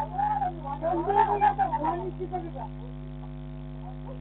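Steady electrical mains hum in a security camera's audio, with a stretch of vocal sounds rising and falling in pitch over it for the first two and a half seconds or so.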